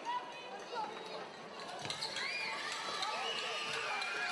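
Arena crowd murmur during a pause before a free throw: low, steady background chatter with scattered distant voices.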